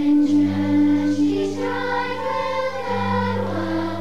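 Children's choir singing sustained notes over held low accompaniment notes, the pitches shifting about every second.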